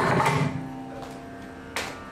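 Mridangam played with bare hands: a cluster of ringing strokes at the start that die away, then one sharp stroke near the end, over a steady low drone.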